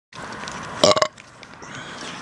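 A brief, loud pitched vocal sound about a second in, over a steady background hiss.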